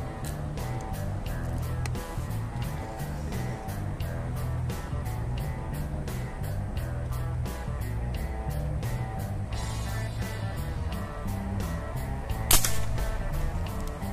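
Background music with a steady beat. About twelve and a half seconds in, a single sharp shot from a regulated PCP air rifle fitted with a knockdown suppressor.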